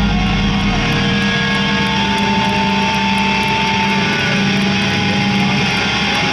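Brutal death metal band live on a festival PA: distorted electric guitars and bass sustaining a loud, steady droning wall of sound with no clear beat. A high, held tone rings over it for a couple of seconds in the middle.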